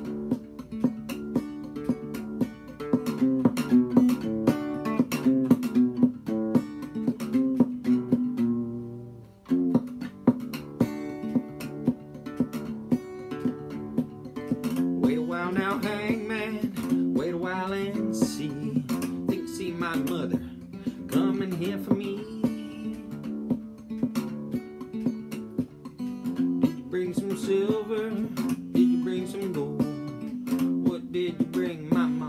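Acoustic guitar played clawhammer style in drop D tuning: a steady, driving rhythm of down-picked notes over a ringing bass drone. The playing breaks off for a moment about nine seconds in, then picks up again.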